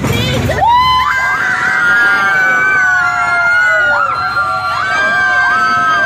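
A group of people screaming together in long, high, overlapping cries, starting about half a second in and carrying on throughout, as on a fun ride.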